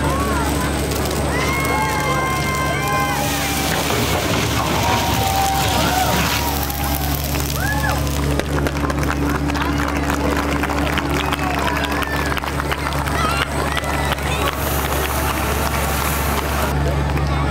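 Fire hose spraying water into a burning room, the flames hissing into steam, over a steady low engine hum. A watching crowd's voices and calls come through.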